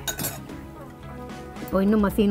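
A metal spoon clinks against a metal cooking pot a few times, briefly, right at the start, over steady background music.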